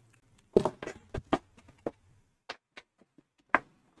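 A string of sharp, irregular knocks and taps, about nine in four seconds, the loudest about half a second in and another near the end: handling noise from a desk camera and green-screen setup being bumped as a person gets up and moves about.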